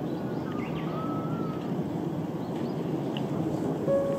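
Outdoor ambience: steady background noise with a few faint, short bird chirps.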